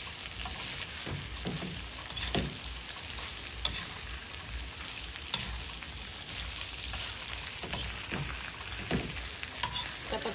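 Shrimp sizzling in a stainless-steel wok with garlic. A metal spatula scrapes and knocks against the pan every second or two as the shrimp are stirred.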